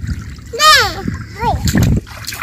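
Shallow stream water splashing around wading bare feet and groping hands, with a child's loud high cry, rising then falling, about half a second in and a shorter one soon after; the splashing gets louder near the end.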